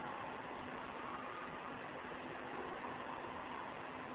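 Steady hiss of the recording's background noise, with a faint low hum underneath.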